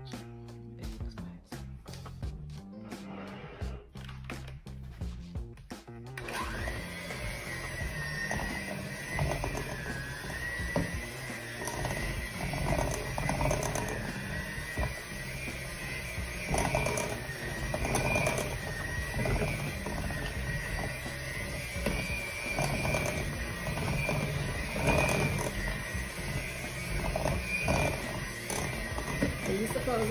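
Electric hand mixer creaming butter, peanut butter and sugar in a glass bowl. It starts about six seconds in, then runs steadily with a motor whine and the beaters churning and scraping through the thick mixture, over background music.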